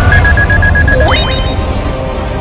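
Animated duel sound effects: a heavy low rumble of an attack blast under a rapid electronic beeping, the sound of a duel life-point counter draining to zero. About a second in, a quick rising electronic glide.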